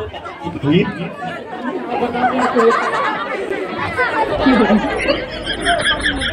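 Several people talking at once in overlapping chatter. A low steady hum comes in about four seconds in.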